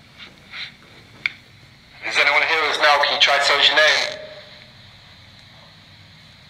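A voice played back through a handheld digital voice recorder's small speaker, lasting about two seconds from two seconds in, after a few faint ticks. The investigators present it as a disembodied voice caught on the recorder (an EVP).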